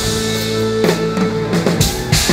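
Live rock band playing, heard from the drum kit: the band holds a chord for most of the two seconds with only a few drum hits, then a cymbal crash comes in near the end. The kit is a Yamaha drum set with Sabian cymbals.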